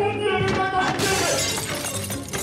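A shattering crash of stage scenery breaking, starting about a second in.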